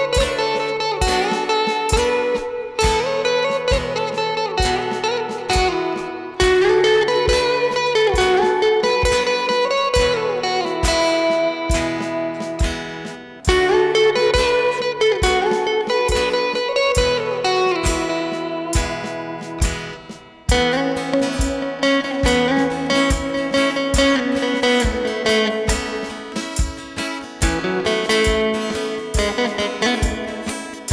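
Instrumental band playing a Tamil film song melody: a Stratocaster-style electric guitar carries the tune with sliding, bending notes, over a strummed acoustic-electric rhythm guitar and an electronic drum kit keeping a steady beat. The melody pauses briefly twice, about a third of the way in and about two thirds of the way in.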